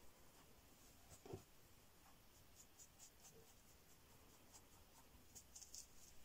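Faint scratching of a fine synthetic round brush working acrylic paint on baking parchment over damp paper towel, with short scratchy strokes that come thicker near the end. A soft thump sounds about a second in.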